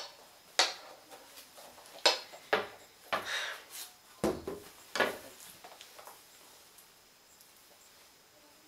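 Handling noise from a bee costume's wire-framed wings being pulled on over the shoulders: a string of short knocks, taps and rustles, stopping about six seconds in.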